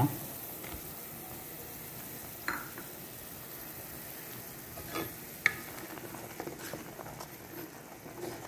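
Pot of onion, tomato and green chili soup base bubbling on the stove with a steady sizzling hiss. A few short sharp clicks stand out, the sharpest about five and a half seconds in.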